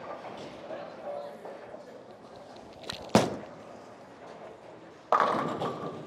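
A bowling ball, a Hammer Scorpion Sting, is delivered: it lands on the lane with one sharp thud about three seconds in. About two seconds later the crash of pins being struck comes in suddenly and fades.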